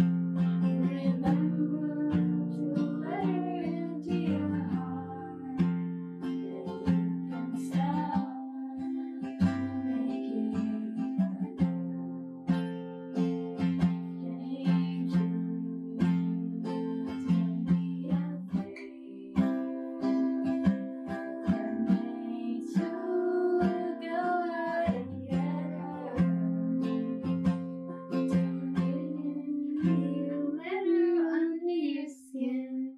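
Epiphone acoustic guitar, played with a capo, strummed in steady chords with regular strokes, and a young woman's voice singing along at times.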